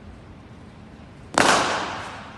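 A cricket ball struck hard by a willow cricket bat: one sharp crack about a second and a half in, with a tail that rings on and fades in the large indoor hall.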